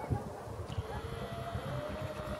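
Wind buffeting a handheld camera's microphone in a gusty low rumble, with a faint steady drone behind it.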